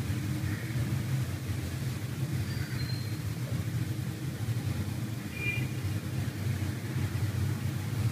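A steady low background rumble with no clear change or events.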